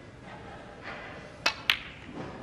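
Snooker cue tip striking the cue ball, then the cue ball clacking into an object ball: two sharp clicks about a quarter second apart, about one and a half seconds in.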